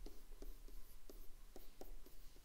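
Stylus pen writing on a tablet screen: a string of faint short taps and scratches as each stroke of the handwriting is made.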